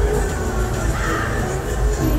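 Live rock band playing amplified music with drums and a strong bass line, with a brief sharper sound cutting through about a second in.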